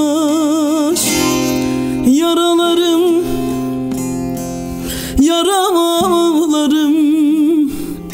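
A bağlama (long-necked Turkish saz) played with a man singing long, wavering held notes over it in Turkish folk style. There are three sung phrases, with breaks about a second in and about three seconds in, where the bağlama carries on alone.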